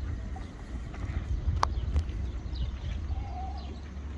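Wind buffeting the microphone: a rough, uneven low rumble. A sharp click comes about one and a half seconds in, and there are a few faint short chirps.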